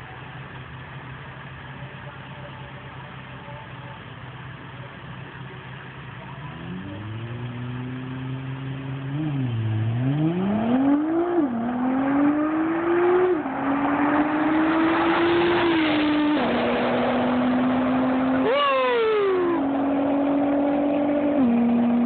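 Nissan R35 GT-R's twin-turbo V6 idling quietly, then accelerating hard from a standstill about six seconds in. The engine note climbs and drops sharply at each of several quick upshifts and grows steadily louder as the car comes closer. Near the end the pitch falls steeply as the car passes and pulls away.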